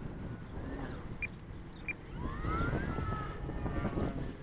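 Radio-controlled model airplane's motor and propeller whining in flight, its pitch sliding upward from about two seconds in as it passes, over a low rumble of wind on the microphone.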